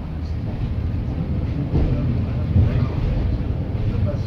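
Steady low rumble inside the passenger saloon of a Class 142 Pacer diesel railbus, its underfloor engine running, growing a little louder about two seconds in.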